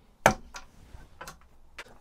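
A chisel tapping against the end of a wooden rail: one sharp tap about a quarter second in, then a few fainter ticks about half a second apart.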